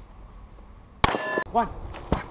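A single carbine shot about a second in, with the struck steel target ringing out briefly.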